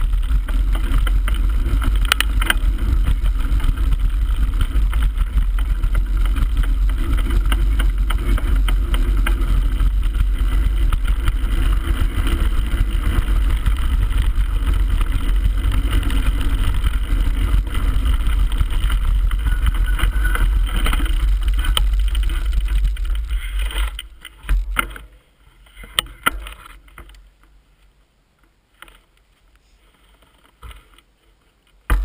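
Wind rushing over a mountain-bike action camera's microphone together with knobbly tyres rolling over a gravel forest track: a loud, steady, low rumble while riding downhill. About 24 seconds in it dies away as the bike slows to a stop, leaving a few light knocks and clicks.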